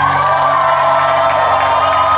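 A rock band's last chord ringing out through the amplifiers while a concert crowd cheers and whoops.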